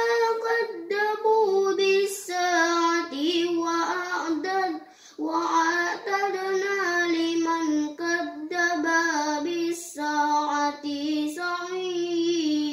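A boy chanting Quran recitation in tartil style, a melodic sung reading in Arabic with long held notes, pausing for breath about five seconds in.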